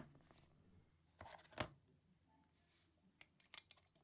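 Faint handling sounds of a brass cartridge case on a metal concentricity gauge against near silence: a small click at the start, two short scrapes about a second and a half in, and a few light ticks near the end.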